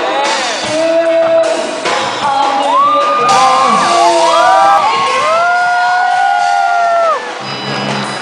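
A live amateur band playing with a female lead singer, heard in a large echoing hall, with audience whoops over the music. The singer holds one long note in the second half that stops about a second before the end, where the music drops away.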